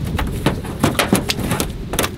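Cast net being hauled into a small boat: an irregular run of clicks and knocks as the net, its rope and weights land against the deck.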